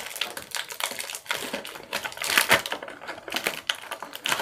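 Clear plastic packaging crinkling and crackling as it is handled by hand, a dense, uneven run of small clicks and rustles.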